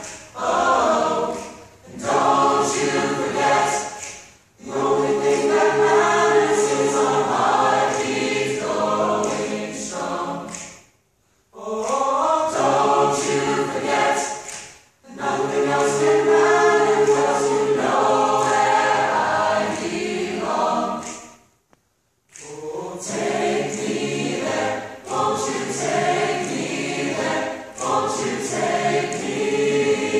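Mixed-voice choir singing a pop arrangement a cappella, in sustained phrases broken by several short pauses.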